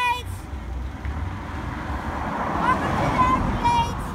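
A car passing on the highway, its road noise swelling to a peak about three seconds in and then fading, with wind rumbling on the microphone.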